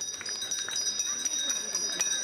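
Metal school handbell shaken steadily, its clapper striking several times a second over a sustained high ringing. This is the ceremonial first bell marking the start of the school year.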